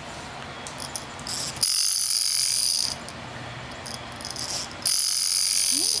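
A baby's plush toy lion rattle shaken in two bursts of about a second each, a bright, hissy rattling, the first about two seconds in and the second near the end.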